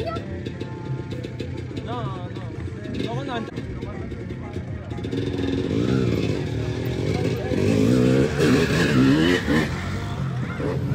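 Small dirt bike engine running, revving and getting louder from about halfway through as it comes nearer, with voices over it.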